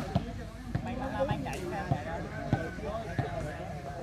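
A volleyball struck several times during a rally: a handful of short, sharp slaps spread over a few seconds, under steady chatter from a crowd of spectators.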